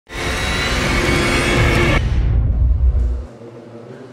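Short news-intro music sting: a loud burst with steady tones for about two seconds, then the top drops away and a low rumble carries on, dying out a little over three seconds in.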